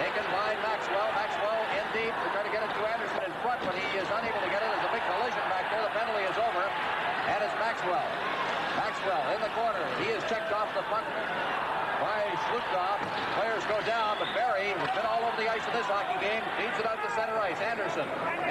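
Male TV commentator talking over the steady noise of an arena crowd, with a few short knocks from sticks and puck on the ice and boards.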